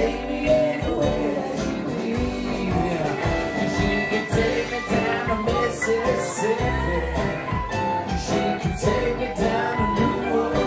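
Live folk-rock band playing with a singing voice: acoustic guitar, upright double bass, drum kit and keyboard, with cymbals ringing out several times.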